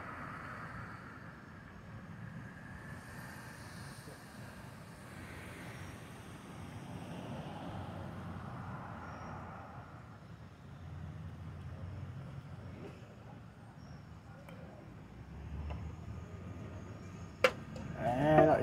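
Faint, steady rumble of distant road traffic that swells and fades gently. A single sharp click comes near the end.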